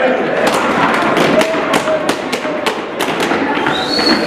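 Gumboot dance: rubber gumboots slapped by hand and stamped on a hard floor in a quick rhythmic pattern of sharp slaps, about three a second, with voices behind.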